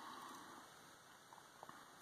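Near silence: room tone, with a few faint clicks in the second half.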